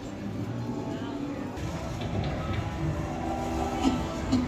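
Soft background music with held tones, over the indistinct chatter of a crowd, with a single click near the end.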